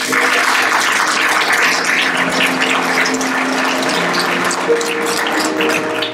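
Audience clapping steadily for about six seconds, then dying away, over held keyboard notes.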